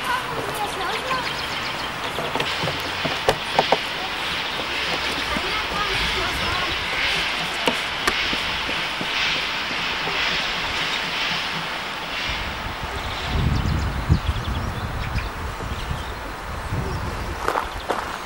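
BR 50 steam locomotive releasing steam with a steady loud hiss for several seconds. Low, uneven rumbling surges follow in the second half.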